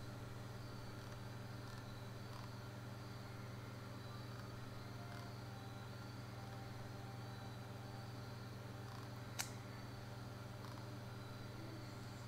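Faint room tone: a steady low electrical hum, with a single sharp click about nine seconds in.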